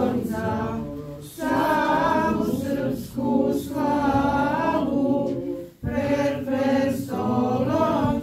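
Unaccompanied choir singing an Orthodox church chant, in sustained phrases broken by short pauses for breath about a second and a half in and again near six seconds.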